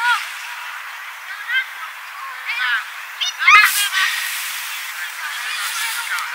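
Children's high-pitched shouts and calls across a football pitch over a steady hiss of wind noise, with one sharp knock about three and a half seconds in.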